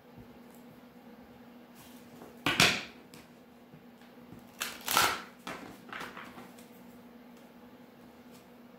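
A hand-held oracle card deck being shuffled: two short bursts of card noise about two and a half seconds apart, the second followed by a softer one, over a faint steady hum.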